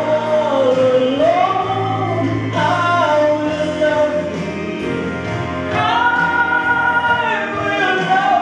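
A man singing a gospel song into a handheld microphone over musical accompaniment, holding long, wavering notes.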